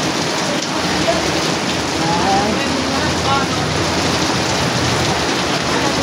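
Steady rain, an even hiss throughout, with faint voices talking in the background.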